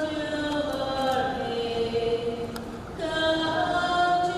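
A slow sung hymn or chant, each note held long before gliding to the next.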